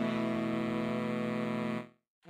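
Saxophone quartet holding a sustained chord, which cuts off suddenly near the end.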